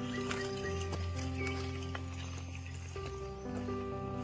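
Background music of slow, sustained chords that change about once a second. Under it, scattered short clicks and crunches of footsteps on a stony trail.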